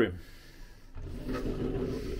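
Bathroom sliding door rolling open on its track, a steady low rumble that starts about a second in.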